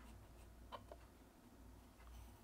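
Very faint scratching of an H pencil sketching on cold-press watercolour paper, with a few light ticks in the first second.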